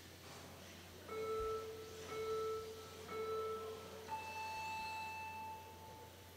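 Electronic start countdown: three low beeps about a second apart, then one longer, higher beep, signalling the start of the run.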